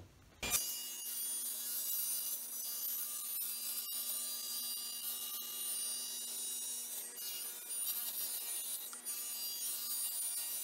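Table saw cutting a sheet of smoked acrylic (plexiglass): a steady, hissing cut with a thin whine, starting about half a second in.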